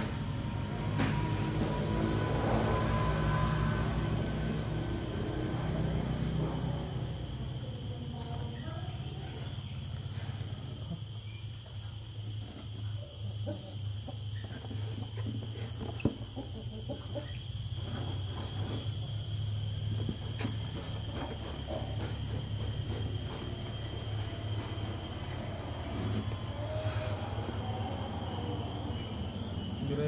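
A knife blade scraping and slicing through packing tape and cardboard on a long parcel, in short irregular scratchy strokes, over a steady low hum.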